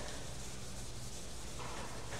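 A chalkboard duster rubbing across a chalkboard in repeated wiping strokes, erasing chalk writing.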